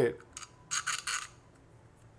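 A long metal screw is pushed through a hole in the metal bus bar into the battery holder. There is a light click, then a brief metallic scrape of about half a second.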